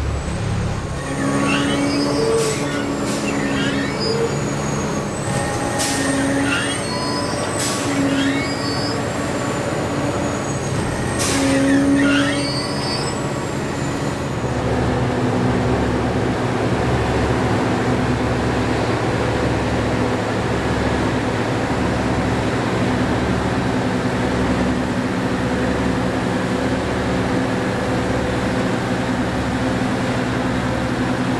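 Track-tamping machine running as it rolls slowly along the rails, a steady machine hum throughout. In the first half there are high squeals and several sharp short sounds. From about halfway a low, even pulsing beat sets in under the hum.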